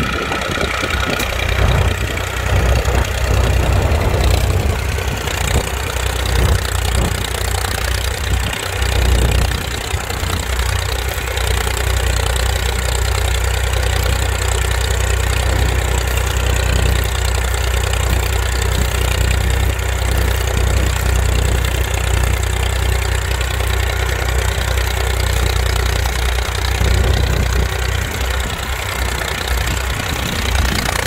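IMT 539 tractor's three-cylinder diesel engine running steadily under load while pulling a plough through the soil.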